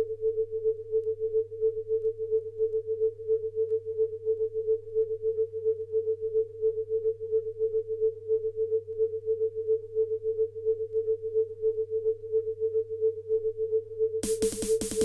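A single pure synthesizer tone pulsing rapidly and evenly at one pitch over a faint low hum, a sparse stretch of a 1990s techno track with no drums.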